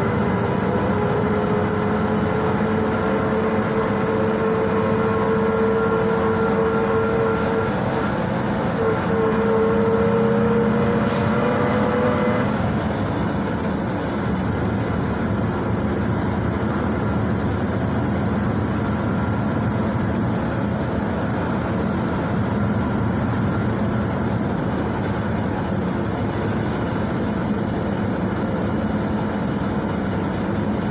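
Inside a PAZ-32054 bus under way: the steady drone of its ZMZ-5234 V8 petrol engine and road noise, with a whine that rises slowly in pitch as the bus picks up speed. The whine cuts off about twelve seconds in, leaving the engine and road noise alone.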